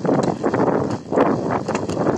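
Bicycle rattling and bumping over a rough, potholed path, with a rush of wind noise on the microphone. It turns loud right at the start, dips briefly about a second in, then picks up again.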